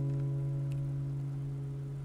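Acoustic guitar's final chord ringing out and slowly fading, with a faint click under a second in.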